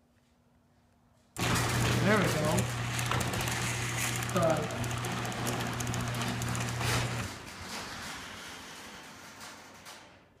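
Genie Intellicode chain-drive garage door opener starting suddenly about a second and a half in, its motor humming under a loud rattle of chain and door, a sign that the newly programmed remote has taken. The hum cuts off about seven seconds in and the rattle dies away over the next few seconds.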